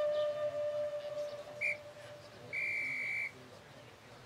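A held flute note fades away over the first second and a half. Then a short, high, steady whistle tone sounds, and after a brief gap a longer one of the same pitch lasts just under a second.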